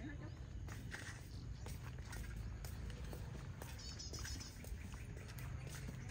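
Outdoor background noise: a steady low rumble with scattered faint clicks, and a brief burst of high chirping about four seconds in.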